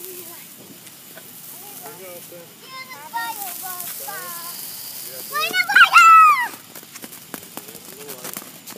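A ground fountain firework burning with a faint hiss and scattered crackles under children's voices. The loudest sound is a child's high squeal about six seconds in.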